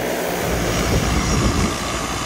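Propellers and electric motors of the XPeng AeroHT X1 single-seat multicopter running steadily as it flies low over grass coming in to land, with a deeper rumble coming in about half a second in.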